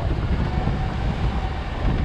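Suzuki Jimny driving slowly uphill in four-wheel drive on a rough, washed-out gravel track. A steady low engine and road rumble is heard from inside the car.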